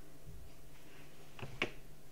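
Two sharp clicks close together about a second and a half in, from a plastic condiment squeeze bottle being squeezed as its tip is pushed into wet, dye-soaked yarn, over a low steady hum.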